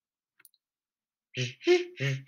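Near silence broken by one faint, short click less than half a second in, then a man's voice starts talking about a second and a half in.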